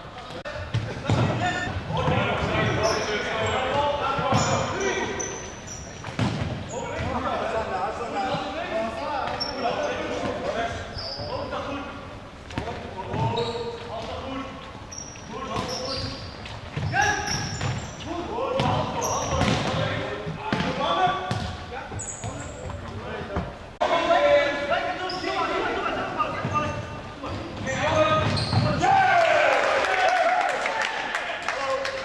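Indoor futsal play in a sports hall: the ball being kicked and bouncing on the wooden floor, short high shoe squeaks, and players shouting to each other, all echoing in the large hall.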